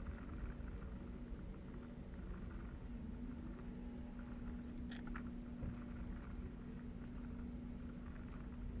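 Faint, crunchy scraping of a tiny drill bit in a hand pin vise being twisted through the hub of a small plastic quadcopter propeller, opening up its shaft hole. A steady low hum runs underneath, and there is a single sharp click about five seconds in.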